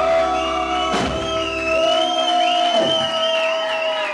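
Live rock-folk band with acoustic guitar, the singer holding one long sung note as the song ends. There is a single strum about a second in, and the bass drops out about halfway through.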